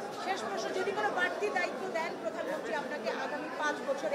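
Several people talking at once: overlapping chatter of a crowd pressed close around the microphone.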